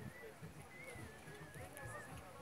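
Faint, distant voices of people talking, with soft low knocks underneath.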